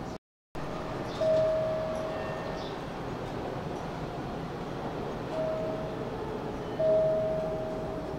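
A Hanshin 5500-series electric train standing at a station with its doors open, its steady hum under a single-pitched chime that sounds three times. Each note starts sharply and fades: a long one, a short one, then a long one near the end.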